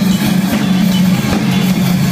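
Live rock band playing loudly: drum kit with cymbals, electric guitar and bass guitar. The bass holds steady low notes under the cymbal wash.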